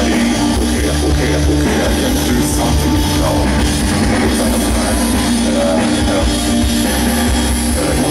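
Live rock band playing loud and steady: electric guitars, keyboards and drums, heard from out in the audience.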